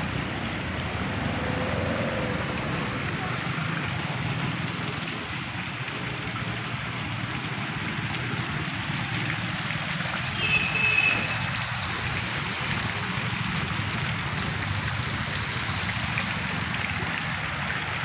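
Decorative fountain's water jets splashing steadily into its pool.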